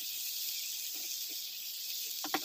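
Diced vegetable frying in hot oil in a pan: a steady sizzle, with a couple of soft scrapes of a spatula stirring it about a second in.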